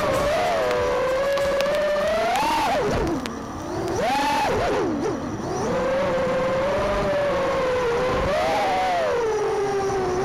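Racing quadcopter's motors and propellers whining, the pitch rising and falling with the throttle; twice, around three and five seconds in, the pitch swoops sharply down and back up.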